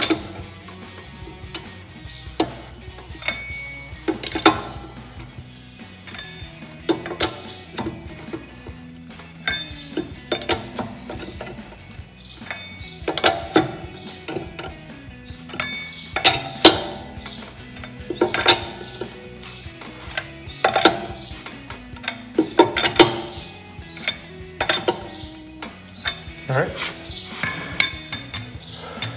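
Irregular metallic clicks and clinks of a socket wrench working chrome acorn lug nuts tight on a wheel's studs, over background music.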